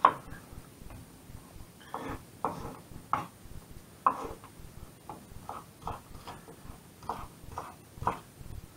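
Kitchen knife cutting and dicing a red bell pepper on a wooden chopping board: about a dozen short knocks of the blade on the board at uneven intervals, the first the loudest.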